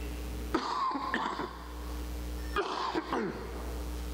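A man coughing twice, about half a second in and again at about two and a half seconds.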